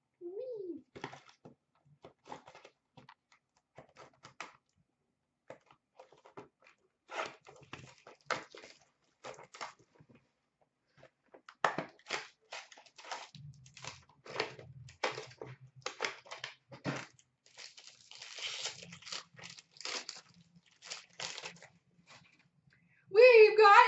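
A sealed box of hockey cards being opened and its packs pulled out and handled: irregular crinkling, tearing and rustling of the cardboard and wrappers, busier from about seven seconds in.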